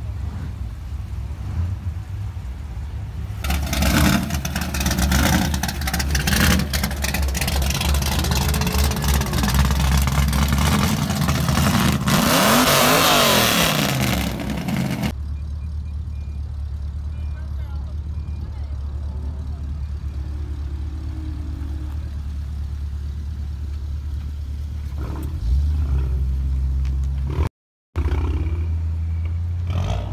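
A motor vehicle driving past on the street, its engine revving up and back down, loudest from about four to fifteen seconds in. A steady low rumble runs underneath.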